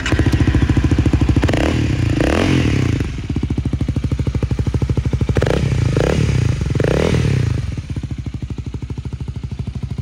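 Honda Rebel 250's single-cylinder engine starting, breathing through an aftermarket OVER Racing silencer. It fires up at once, is revved once for about a second and then blipped three times in quick succession, and settles to a steady idle near the end.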